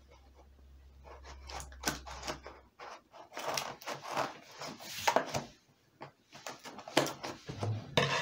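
Scissors cutting through the tape seal on a cardboard toy box: irregular snips, clicks and scrapes as the blades work along the tape and the box is turned in the hands.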